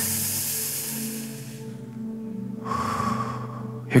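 A man breathing deeply into a close handheld microphone: a long breath in, a pause of about a second, then a breath out. Soft held background music chords run under it.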